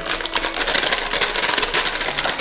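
Paper butter wrapper crinkling in a rapid, irregular crackle as a stick of butter is peeled out of it.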